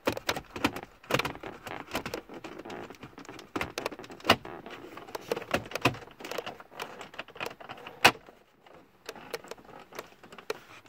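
Plastic centre-console trim being worked back into place by hand, with a run of clicks, knocks and rattles. The two loudest sharp clicks come about four seconds in and about eight seconds in, as the pieces snap home.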